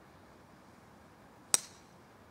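A golf driver striking a ball off the tee: one sharp, high-pitched crack about one and a half seconds in, with a brief ring after it.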